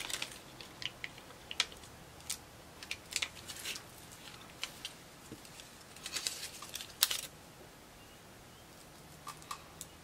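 Scattered light clicks, taps and rustles of hands handling small paper stickers and a roll of adhesive tape on a paper layout, with a sharper snap about seven seconds in.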